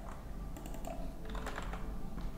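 Typing on a computer keyboard: a few irregular key clicks as a short word is entered.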